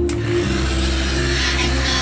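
Electric rotary polisher with a wool buffing pad running against a fiberglass boat hull, its rubbing whir coming in with a click just after the start. Loud electronic music plays throughout.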